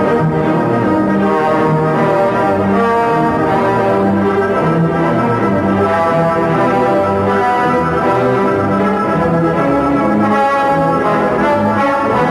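Symphony orchestra playing a loud classical orchestral piece, full sustained chords moving from note to note at a steady level.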